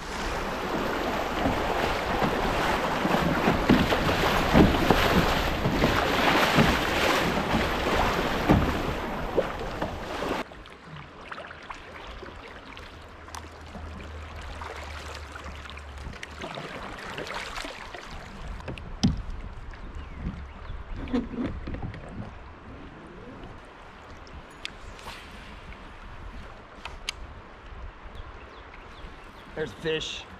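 Kayak moving through a shallow creek riffle. A loud, fluctuating rush of water and wind noise lasts about ten seconds and cuts off abruptly. Then a quieter flow of running water follows, with scattered paddle splashes and a few sharp knocks.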